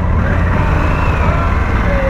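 Harley-Davidson Pan America's Revolution Max 1250 V-twin engine running steadily, an even low engine note with no revving.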